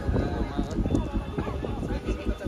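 People talking close by, with a run of irregular knocking or clopping sounds underneath.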